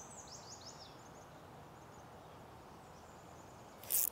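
Faint background ambience with a small bird giving a run of quick, high descending chirps over the first second and a half. A short sharp noise comes near the end.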